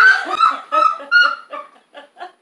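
A woman laughing uncontrollably in high-pitched squeals, broken into a run of short bursts.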